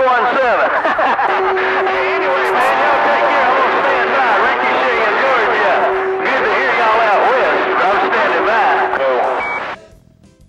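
CB radio receiving skip on channel 28: several stations' voices overlap at once, garbled and unreadable, over a steady low heterodyne whistle. A short high beep comes near the end, and the signal drops out just before the end.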